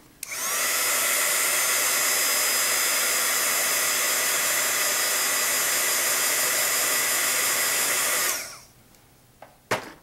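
Craft heat tool (embossing heat gun) blowing hot air over a freshly gessoed metal embellishment to dry the gesso: a steady whir and hiss that comes up just after the start and winds down about eight seconds later. A single click follows shortly before the end.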